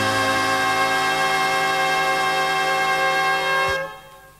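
A band with brass holding one long final chord, which is cut off with a short hit near the end, as a recorded song finishes.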